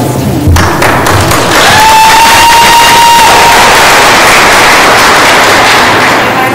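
Audience applauding, with one long high-pitched cheer held over the clapping for about a second and a half, starting near two seconds in.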